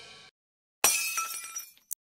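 Logo-intro sound effect: a fading tail dies out, then about a second in a sudden glassy crash with ringing tones that dies away within a second, followed by a short high blip near the end.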